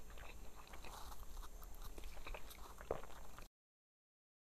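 Faint chewing of a flaky cheese croissant, with small crackles of pastry and mouth clicks and one sharper click near the end; the sound then cuts off suddenly to dead silence.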